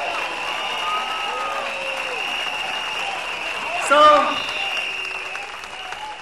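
Crowd applauding at an outdoor rally, an even clatter of many hands, with a steady high-pitched tone running through it.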